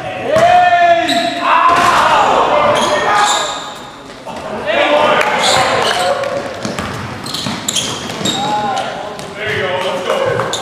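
Indoor basketball game: players shouting on the court, with a basketball bouncing on the gym floor, all echoing in a large gymnasium.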